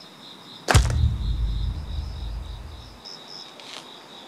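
A dramatic impact sound effect: a sharp whoosh-hit about a second in, opening a low boom that fades out over about two seconds, laid over crickets chirping steadily in the night ambience.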